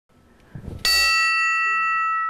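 An old ship's bell struck once, about a second in. It gives a clear ring of several high tones that hangs on and slowly fades.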